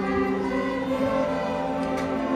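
Student string orchestra of violins and a double bass playing a slow passage of long held chords, with notes changing slowly.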